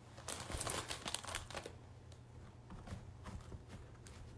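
Craft moss rustling faintly as it is tucked in by hand, the handling busiest in the first second and a half, then a few scattered rustles.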